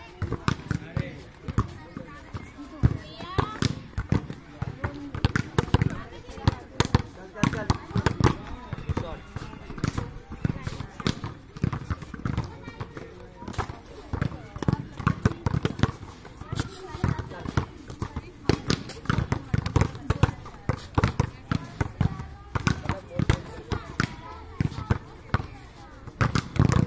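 Volleyballs being hit and bouncing on a dirt court: many sharp slaps and thuds in irregular succession, with players' voices in the background.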